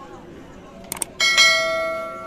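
YouTube subscribe-button sound effect: a quick double mouse click about a second in, followed at once by a bright bell notification chime that rings on and slowly fades.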